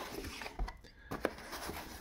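Cardboard box being opened by hand: faint rubbing and a few soft taps of cardboard and foam packaging as the lid is lifted.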